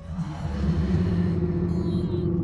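Horror film score: a low, rumbling drone that comes in suddenly and holds loud.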